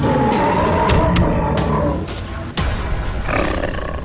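A gorilla roar sound effect: one long roar that lasts about two seconds, over music with sharp percussive hits. Another heavy hit comes about two and a half seconds in.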